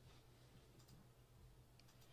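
Near silence: faint room tone with a low steady hum and a few faint clicks.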